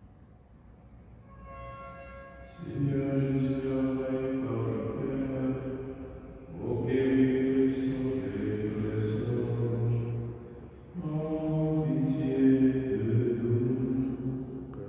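A priest's voice chanting unaccompanied, in three long phrases of held notes with short breaks between them.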